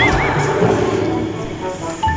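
Horse whinny sound effect with a wavering, up-and-down pitch, ending about half a second in, laid over background music.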